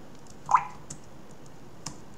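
Computer keyboard keystrokes: a few separate faint clicks, with one brief, louder sound about half a second in.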